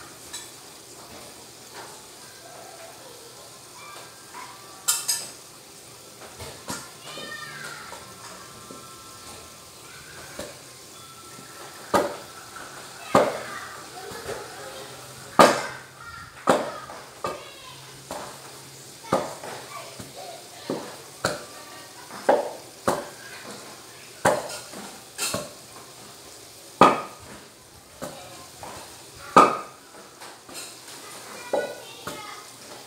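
A utensil mashing boiled bananas in a stainless-steel pot, knocking against the metal in irregular strokes about once a second, becoming sharper and more frequent after the first ten seconds or so.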